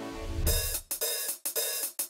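Music transition: a low swell, then a sustained cymbal-like wash broken by three brief cut-outs.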